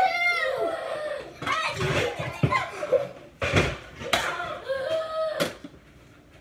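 Young children's high-pitched voices without clear words, with several sharp knocks in the second half.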